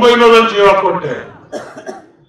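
A man's raised voice speaking into a handheld microphone, trailing off about a second in.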